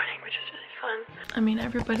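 Only speech: a young woman talking quietly, half under her breath.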